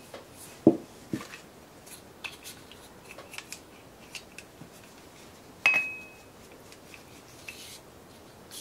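Steel pistol parts of a Heckler & Koch P30L being handled and wiped with an oily cloth: soft knocks and rubbing, with one sharp metallic click that rings briefly a little past halfway.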